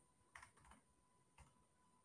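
Faint computer keyboard typing: a few scattered key taps as a terminal command is entered.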